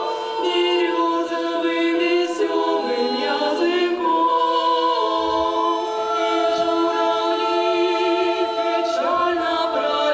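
Women's vocal ensemble singing a cappella into microphones, several voices in close harmony holding long sustained chords.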